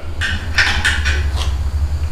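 Several light clinks and taps scattered over about a second and a half, over a steady low rumble.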